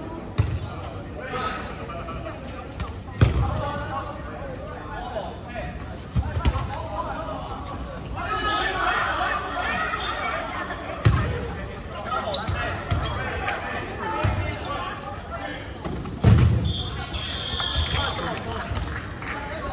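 Dodgeballs thrown and striking players and the hard court surface, a sharp thud every few seconds (about five in all, the loudest near the end), amid players shouting and calling to each other.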